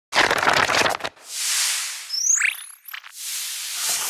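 Sound effects of an animated logo intro: a crackling burst lasting about a second, then a swelling whoosh, a short rising chirp, and a second whoosh that fades away near the end.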